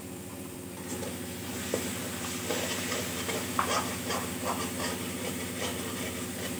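A spoon stirring and scraping through a frying tomato-onion masala in a metal pan, in short irregular strokes, with a light sizzle. A steady low hum runs underneath.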